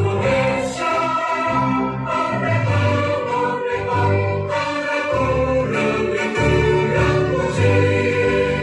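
Choral music: a choir singing long held notes over instrumental backing.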